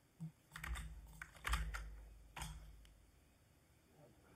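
A handful of separate computer keyboard keystrokes, faint, spread over the first two and a half seconds, as a command is pasted and run in a terminal.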